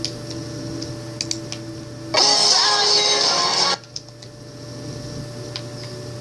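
A Furby toy's electronic voice warbling for about a second and a half, starting a little past two seconds in, over a steady low hum with a few faint clicks.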